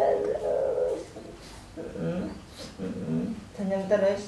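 A man crooning to a baby in a sing-song voice, with held, higher notes for about the first second, then a lower voice from about halfway through.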